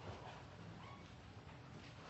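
Near silence: faint room tone, with a brief faint squeak about a second in.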